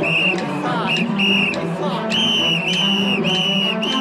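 Shrill whistle blasts keeping time for mikoshi shrine bearers: a few spaced short blasts, then a quick run of four or five in the second half, over the steady murmur of the crowd of bearers.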